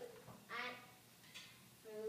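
A person's voice: one short, faint vocal sound about half a second in.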